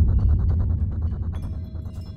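Deep, low boom sound effect with a fast throbbing pulse, fading steadily. It is heard over the backing music as a title card transition.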